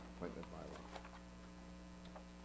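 Steady electrical mains hum on the recording, with a few faint murmured words in the first second.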